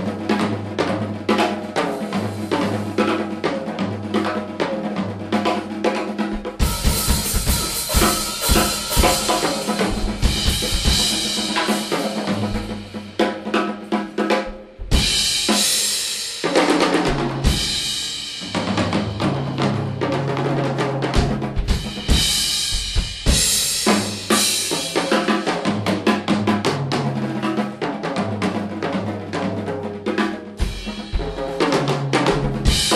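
Live jazz band playing, with the drum kit to the fore over a walking line of low bass notes. The cymbals and drums grow louder and busier about six seconds in, dip briefly near the middle, then drive on.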